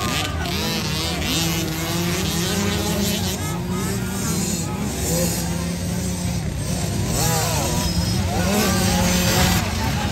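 Small 50/65cc youth motocross bikes running and revving as they race around the dirt track, engine pitch rising and falling, with spectators talking and shouting.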